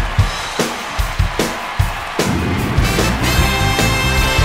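Soul band music: a drum kit plays sharp, evenly spaced hits, then about two seconds in the full band comes in, with a horn section holding chords over it.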